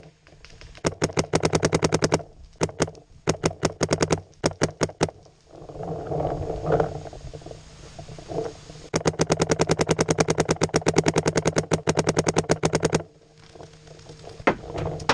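Paintball marker firing rapid strings of shots, short strings first, then one long fast string lasting about four seconds near the end, with a stretch of scuffling and scraping in between.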